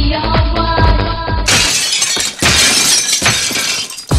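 Dance music with a steady kick-drum beat, cut about a second and a half in by a loud noisy crash like shattering glass. The crash is a transition effect that lasts about two and a half seconds, before the next track's beat comes in.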